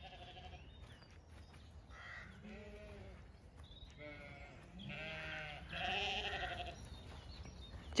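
A flock of Zwartbles sheep bleating faintly, about six short wavering calls, the loudest about five to six seconds in.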